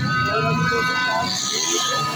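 Plastic toy trumpets (baja) being blown: a steady held note with several overtones that sets in at the start and carries on through, over voices of people around.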